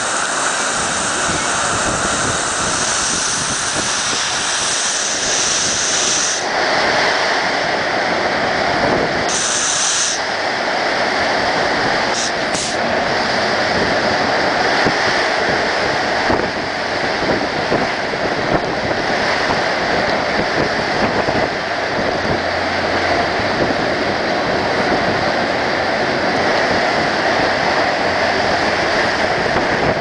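Typhoon-force wind and heavy driving rain: a loud, steady rush of noise that shifts in tone a couple of times, with a few faint knocks about twelve seconds in.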